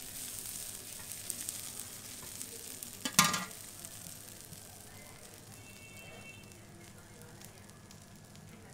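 Moghrabieh and chickpeas sizzling on a large hot metal pan, a steady hiss that slowly fades. About three seconds in, a metal spoon strikes the pan once with a ringing clank.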